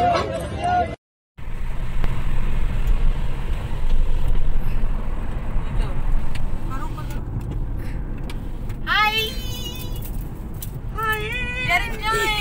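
Steady low rumble of road and engine noise inside the cabin of a moving Mercedes-Benz car, with voices calling out near the end.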